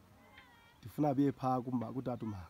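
A man's voice, low-pitched and speech-like, starting about a second in, after a faint, thin, wavering high call.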